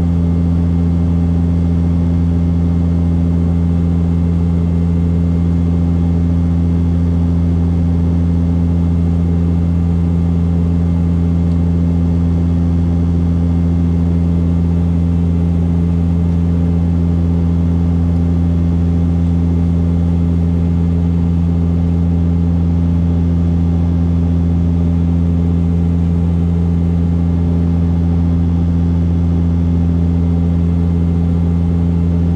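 Steady drone of a turboprop airliner's propellers and engines at cruise, heard inside the passenger cabin: a constant deep hum with a few low tones stacked over a rush of airflow noise, unchanging throughout.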